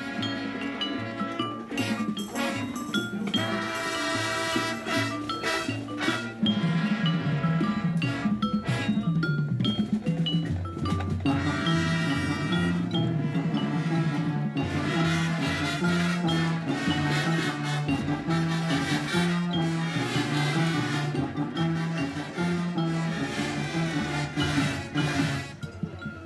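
High school marching band playing its halftime field show: brass chords over a moving bass line, punctuated throughout by percussion hits.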